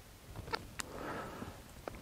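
Faint clicks from a Nikon D750's controls as images are scrolled through on its back screen, with a soft breath about a second in.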